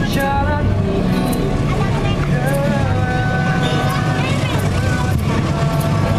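Street buskers performing a song: a man singing over strummed acoustic guitar, holding one note steady for about a second in the middle.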